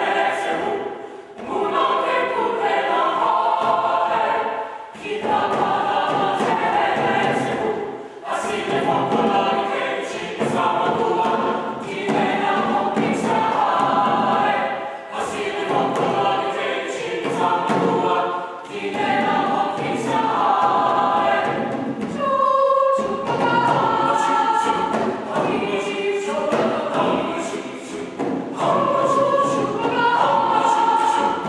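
Mixed-voice choir of men and women singing, in short phrases with brief breaks between them.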